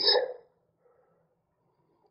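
The last syllable of a man's spoken phrase, trailing off in the first half-second, then near silence: room tone.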